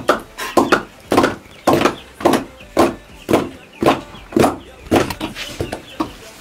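A steady rhythm of short, sharp beats, a little under two a second, about eleven in all.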